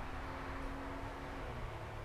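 Quiet steady background noise of a small room, with a faint steady hum that stops about one and a half seconds in.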